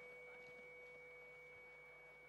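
Near silence, with two faint steady tones underneath, one mid-pitched and one high.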